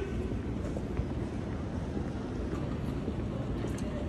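Steady low rumble and hiss of outdoor city background noise, with no single clear event.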